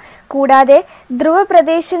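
A woman narrating in Malayalam, with a brief pause near the start.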